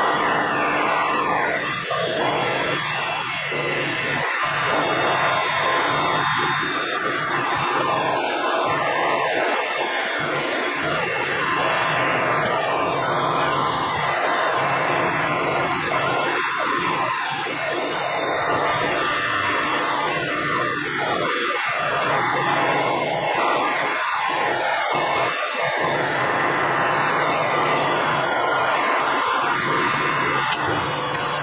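Metal lathe running, its cutting tool turning material off the counterweights of a Suzuki 650 twin crankshaft: a steady machining noise over the motor's hum.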